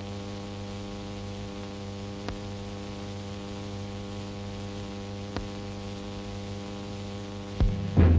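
Steady electrical hum with light hiss on an old newsreel soundtrack, broken by two faint clicks and a louder thump near the end.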